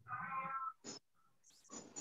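A single drawn-out, high-pitched call lasting about two-thirds of a second at the start, followed by a short click.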